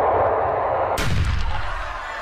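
Cinematic transition sound effect: a rushing whoosh that swells up, then a sudden deep boom about a second in that fades away.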